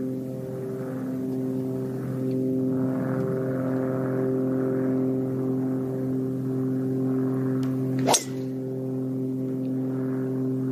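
A golf tee shot: a driver strikes the ball with one sharp crack about eight seconds in. A steady low hum of several even tones runs underneath.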